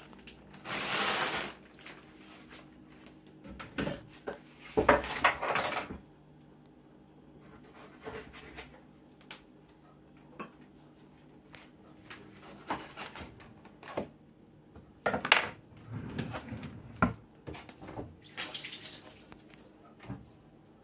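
Kitchen worktop clatter: scattered knocks of a knife on a wooden chopping board and of utensils, as kiwis are cut in half. Between them come a few noisy bursts about a second long, from handling or running water.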